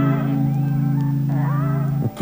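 Background music: a steady held low chord with a wavering melody line rising and falling above it.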